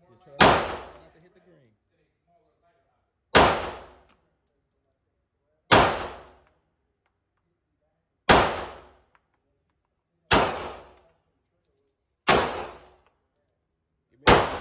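Glock 19 Gen 5 9mm pistol fired six times at a slow, deliberate pace, about two to three seconds between shots, each shot ringing briefly off the walls of the indoor range.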